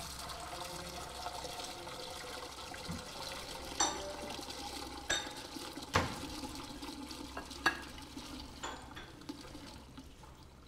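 Water running at a kitchen sink while dishes are washed, with plates and crockery clinking several times, the loudest clinks about four, five and six seconds in.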